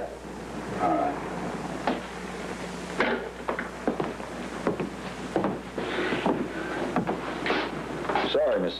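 Scattered small knocks and rustles of objects handled at a desk, heard over the steady hiss and low mains hum of an old television film soundtrack.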